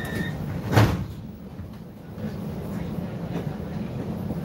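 Inside a tram: the tail of a high door-warning beep, then a loud thump about a second in as the doors shut, followed by the tram's steady low running rumble.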